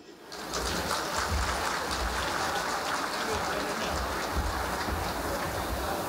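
Audience applauding, a dense steady clapping that swells up in the first half second and then holds evenly.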